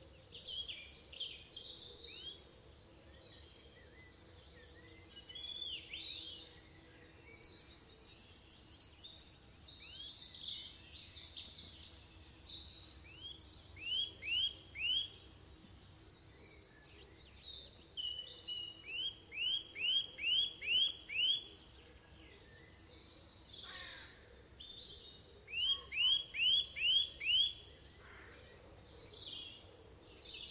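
Wild birds singing and calling, with several voices. One gives runs of three to seven quick, repeated, swooping notes; others add fast, higher trills and scattered chirps between the runs.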